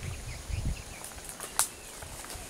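Footsteps on a scrub path with faint, short bird chirps, and one sharp click about one and a half seconds in.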